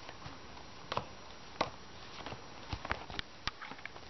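Playing cards being dealt from a deck onto piles on a carpeted floor: a run of light, irregular taps and flicks, coming closer together in the second half.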